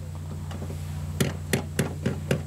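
Clockwork-style clicking of a small toy horse as it starts moving along the board: sharp, even clicks about three a second, starting a little over a second in, over a steady low hum.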